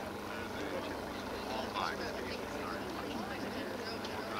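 Faint, distant chatter of people outdoors, over a steady low hum.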